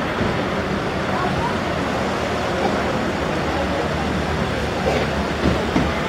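Street traffic: the steady noise of a queue of slow-moving and idling cars, with indistinct voices of passers-by, a little more prominent near the end.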